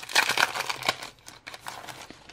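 Plastic packaging of a planner sticker kit crinkling and rustling as the sticker sheets are handled and slid out, busiest in the first second, then dying down to scattered small crackles.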